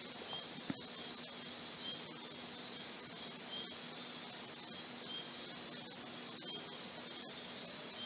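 Faint steady hiss of a voice recording's background noise (room tone), with a thin high tone and a low hum running under it.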